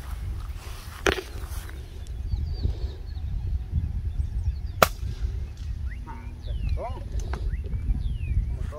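A single sharp gunshot about five seconds in, with wind rumbling on the microphone throughout. A softer knock comes about a second in, and short bird chirps follow the shot.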